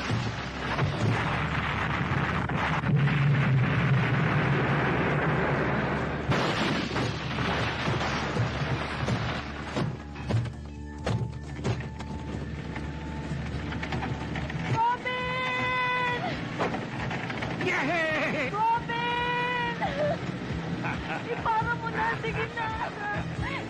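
Movie sound effects of an explosion and a car crash: a loud blast with crashing noise that dies down after about six seconds into a lower steady rumble. About fifteen and nineteen seconds in come long, held screams.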